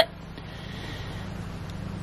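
A pause in speech filled with steady, faint background noise and a low hum.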